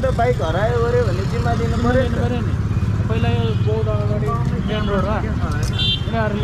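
Men talking throughout, over a steady low rumble.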